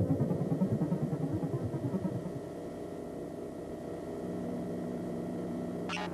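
Electronic music on an analog synthesizer: a fast-pulsing low drone that thins out after about two seconds into steadier low tones, with a new choppy rhythmic pattern starting right at the end.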